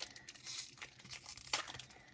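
Foil booster pack wrapper of Pokémon trading cards crinkling and tearing as it is opened by hand, in a run of short rustling bursts, loudest about half a second in.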